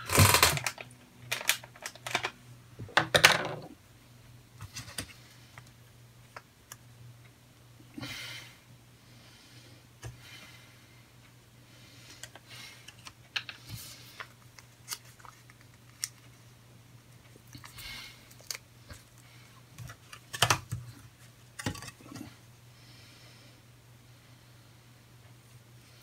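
Small clicks and taps of hard plastic kit parts being handled at a desk while stickers are applied, irregular and scattered. The handling is busiest and loudest in the first few seconds and again about twenty seconds in, over a faint steady low hum.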